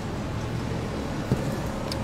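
Steady low rumble of road traffic, with a single sharp click a little past halfway.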